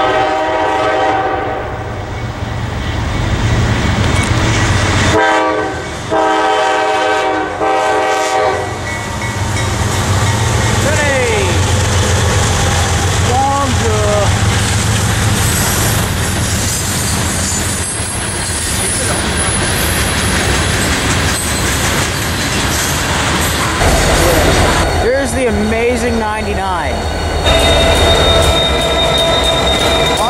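A diesel-hauled freight train sounding its multi-note air horn as it approaches: one long blast at the start, then a few more blasts about five to nine seconds in. Then the heavy rumble of the locomotives and hopper cars rolling by, with wheels squealing in short rising and falling glides.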